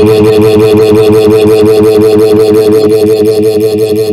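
Loud computer text-to-speech voice reading a string of gibberish characters, drawn out into one steady buzzing drone with a fast, even pulse.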